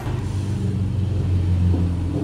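Car engine sound effect revving, a loud steady low rumble, the 'vroom' of a car taking off.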